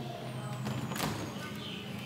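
A door knob is turned and the door's latch clicks once, about a second in, as an interior door is pushed open.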